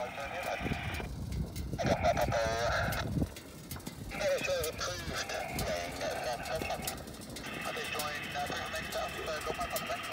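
Indistinct, thin-sounding voice in four bursts of one to three seconds each, over a hiss that starts and stops abruptly with each burst.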